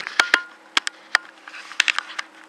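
Handling noise from a handheld camera being moved: a scattered series of short clicks and knocks, over a faint steady low hum.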